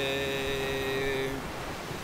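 A man's voice holding one steady, low hesitation sound for about a second and a half, then stopping. Surf and wind noise on the microphone follow.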